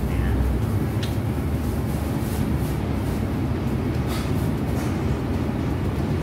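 A steady low background rumble with a couple of faint clicks, about a second in and about four seconds in.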